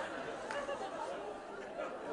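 Theatre audience murmuring and chattering between jokes, easing off slightly towards the end.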